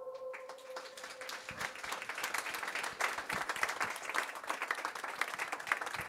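Small audience applauding at the end of a live song. The clapping starts about a third of a second in as the last held note dies away, and it grows fuller.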